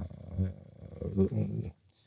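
A man's quiet, low hesitation sounds between words, two brief murmurs from the throat. Near the end the sound cuts to dead silence.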